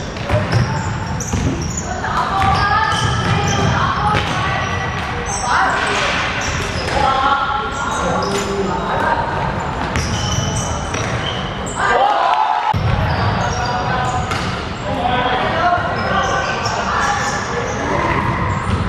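Basketball game in a large sports hall: a basketball bouncing on the hardwood court under indistinct shouts and calls from players and onlookers, all echoing off the hall.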